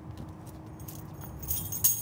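A light jingling rattle of small clicks, building to its loudest with a sharp click near the end, over a steady low rumble.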